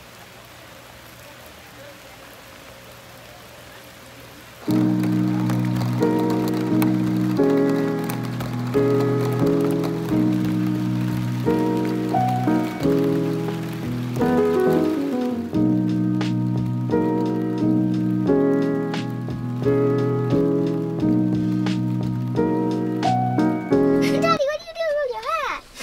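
Steady rain falling for the first few seconds, then instrumental background music comes in suddenly about five seconds in and is much louder, running on with changing notes over the rain.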